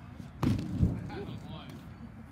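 A sharp smack about half a second in, then a dull thud, from players in a football long-snapping drill. Faint voices can be heard behind them.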